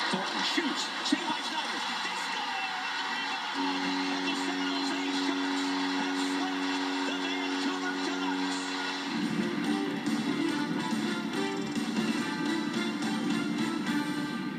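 Hockey arena crowd noise mixed with music; a held chord sounds from about three and a half seconds in until about nine seconds, followed by shorter, choppier notes.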